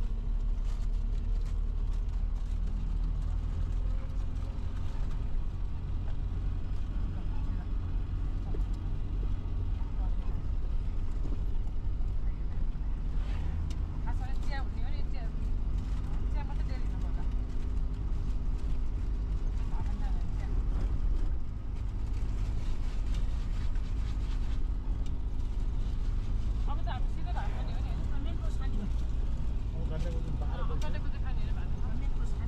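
A motor vehicle's engine running steadily under a heavy, constant low road rumble, with voices speaking briefly now and then.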